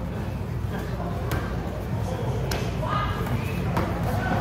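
Kicks and punches landing during kickboxing sparring: a few sharp thuds spread across the seconds, over a steady low room rumble and faint background voices.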